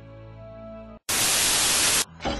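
Soft music with held notes that cuts out about halfway through. After a split second of silence comes a loud burst of static hiss, about a second long, which starts and stops suddenly.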